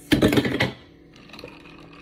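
A metal straw stirring ice in a glass mason jar of iced coffee: a quick burst of rapid clinking and rattling for about half a second, then a few faint clicks.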